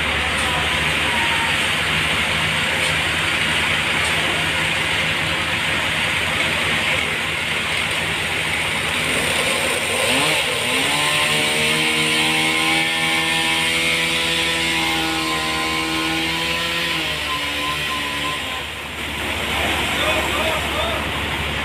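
A Toyota forklift's engine running under load as it carries a heavy log. About halfway through the engine revs up to a higher, steady pitch and holds it for several seconds, then drops back near the end.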